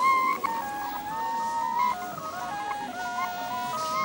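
Music: a simple melody of held notes stepping up and down.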